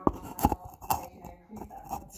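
Three sharp knocks about half a second apart, from hand tools being handled at a steel workbench.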